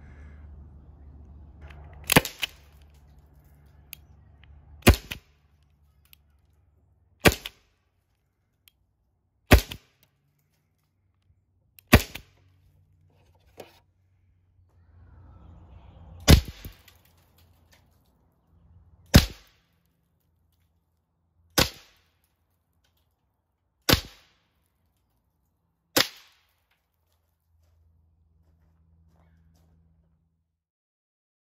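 Byrna SD CO2-powered .68 calibre launcher firing Eco Kinetic practice rounds: ten sharp pops, about one every two and a half seconds, with a longer pause near the middle.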